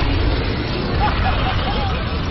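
A dragon's fire blast rushing down a chimney into a fireplace: a loud, steady rush of flame with a deep rumble, starting abruptly.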